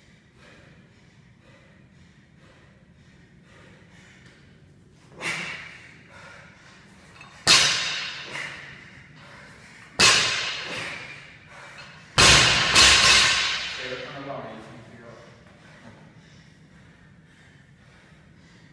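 A barbell loaded with 15 kg bumper plates, 50 kg in all, dropped onto a rubber gym floor four times a few seconds apart, each landing a sharp crash that rings and rattles away as the plates settle. The last drop lands twice in quick succession.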